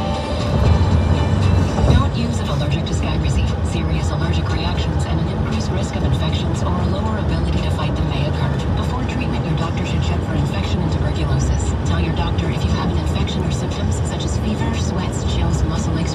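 Steady low rumble of road and engine noise inside a moving car, with a commercial's background music and a voice playing over it.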